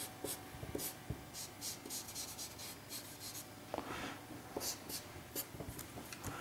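Marker tip scratching over paper in a series of short, quick strokes, shading in an area of a drawing.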